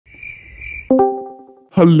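Discord call sounds: a steady high electronic tone for about a second, then a chime of several notes struck together that fades out as the other user joins the call. A voice starts speaking near the end.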